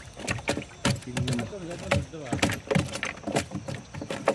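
Freshly caught fish flapping against the wooden floor of a plank boat, an irregular run of sharp knocks and slaps.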